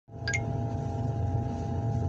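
Excavator's diesel engine running steadily at idle, a low rumble with a faint steady hum over it, heard from the operator's seat. A brief high-pitched chirp sounds near the start.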